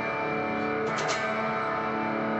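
Electric guitar strumming a D/F♯ chord, the low F♯ fretted with the thumb. The chord rings steadily, with a quick pair of strokes about a second in.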